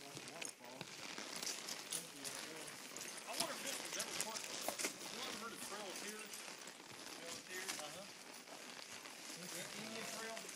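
Indistinct voices of riders talking, with irregular clicks and crackles from horses walking on the trail, the sharpest about three and a half and five seconds in.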